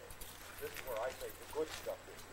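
Indistinct voices of several people talking, with a few short sharp clicks among them.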